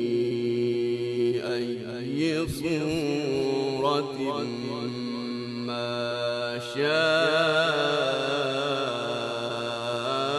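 A man recites the Quran in a melodic, drawn-out style, holding long notes whose pitch wavers in ornamented turns. A louder, higher phrase begins about seven seconds in.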